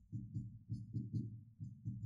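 A quick run of faint, dull taps, about four or five a second, from a stylus striking and dragging across an interactive touchscreen board as short dashed lines are drawn.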